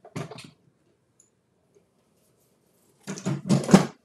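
Handling noises from a craft table: a few brief knocks and rustles just after the start, then a louder cluster of knocks and clatter near the end.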